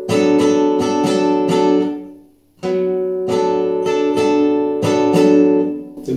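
Classical nylon-string guitar strummed with the fingers in a repeating down-and-up rhythm on one held chord. It plays in two phrases: the first rings out and stops about two seconds in, and the pattern starts again just after.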